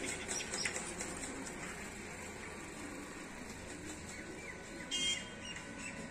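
Faint outdoor background with a few brief bird chirps, the clearest one about five seconds in.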